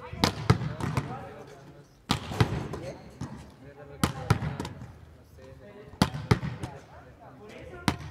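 A volleyball slapped one-handed against a concrete wall in a repeated drill: sharp slaps in pairs about a third of a second apart, the hand striking the ball and the ball hitting the wall, recurring every two seconds or so.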